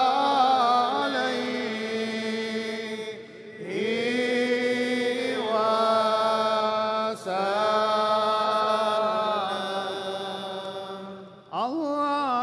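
A man's voice chanting an Arabic devotional chant in praise of the Prophet over a PA in long, held, ornamented notes. There is a brief break for breath about a third of the way in and again near the end, and each new phrase slides up into its first note.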